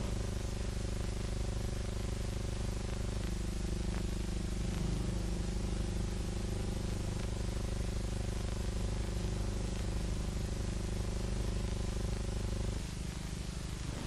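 Steady low hum with hiss, typical of an old film soundtrack with no narration, changing slightly near the end.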